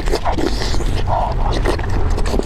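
Close-miked chewing of a big mouthful of roasted pork belly: wet mouth sounds broken by many short clicks.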